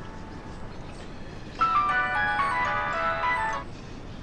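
Mobile phone ringing with a melodic chime ringtone: a bright run of stepping notes plays from about one and a half seconds in and lasts about two seconds.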